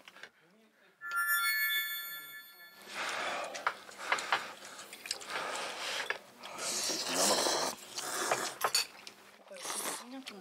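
A short bright chime sound effect about a second in, then people slurping ramen noodles in long, noisy bursts one after another until the end.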